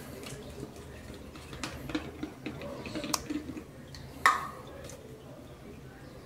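Small plastic clicks and knocks from a fabric-softener bottle being handled over a washing machine's plastic dispenser drawer, with the sharpest knock about four seconds in.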